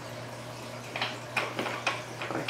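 A few light clicks and taps from hands handling the plastic canister and lid of a Fluval FX6 canister filter, starting about a second in, over a steady low hum.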